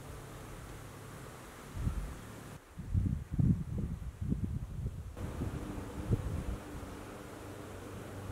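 Outdoor ambience with wind buffeting the microphone: irregular low rumbling gusts from about two seconds in to past six seconds, over a steady low hum and faint hiss.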